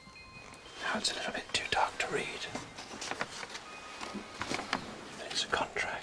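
A man whispering, with faint held music tones underneath.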